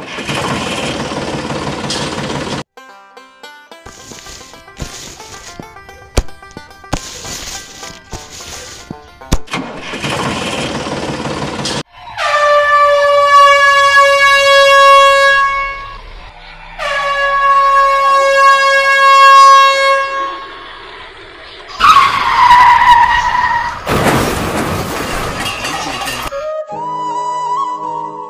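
A train horn blows two long, loud blasts of about four seconds each, then a shorter blast that falls in pitch, followed by a burst of rushing noise. Bursts of rushing noise and music come before the horn.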